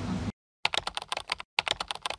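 Keyboard typing sound effect: rapid keystroke clicks in two runs of under a second each, separated by a short gap. Before them, a moment of steady background noise cuts off suddenly.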